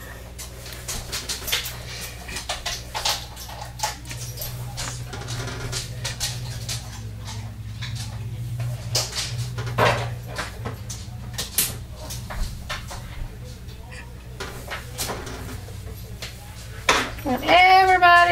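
Scattered light clicks and taps of small soap coffee-bean toppers being handled and pressed onto the top of a soap loaf, over a steady low hum.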